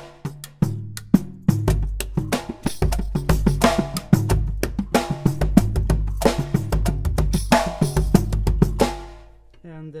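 Drum kit played with one stick and one bare hand, the bass-drum part played by hand on a drum within reach rather than with the foot pedal. Deep booming drum notes sit under quick strokes on smaller drums and a few ringing cymbal strokes, stopping about nine seconds in.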